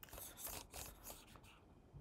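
A few faint clicks of a computer keyboard in the first half second or so, then only low room tone.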